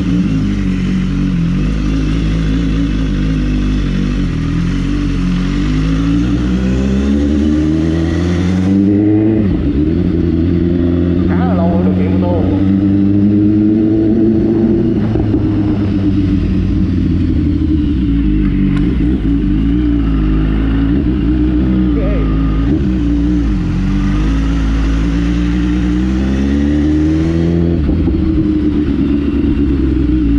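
A BMW S1000RR's inline-four engine ticks over steadily, then pulls away and rides at low speed. The revs rise and fall repeatedly with throttle and gear changes.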